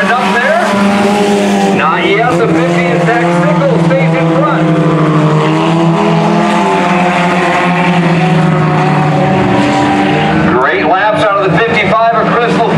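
Several sport compact race cars running hard together on a dirt oval, a loud, continuous blend of engines whose pitch rises and falls as the drivers accelerate and lift through the turns.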